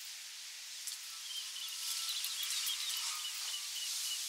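Outdoor ambience: a steady high hiss with faint short high chirps scattered through it, growing a little louder about halfway through.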